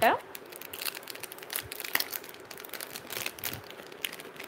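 Clear plastic jewellery pouches crinkling as they are handled, a run of irregular light crackles.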